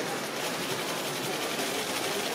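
Camera shutters clicking rapidly and continuously, several cameras firing at once.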